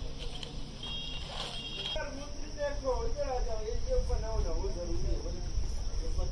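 A young child's high-pitched voice, heard for a few seconds starting about two seconds in, over a low rumble on the microphone. There are brief high chirps about a second in.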